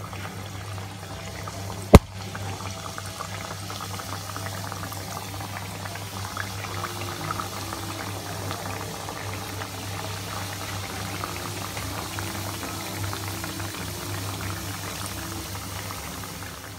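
Doughnut dough deep-frying in hot oil, a steady sizzling and bubbling with fine crackles. A single sharp click about two seconds in is the loudest sound.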